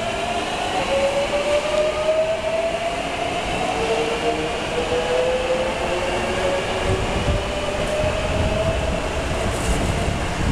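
Hankyu 8300 series electric train accelerating away from the platform in a subway station, its VVVF inverter and traction motors giving a whine of several rising tones that drop back and climb again as it gathers speed. Low rumbling thuds from the wheels on the track build near the end as it recedes into the tunnel.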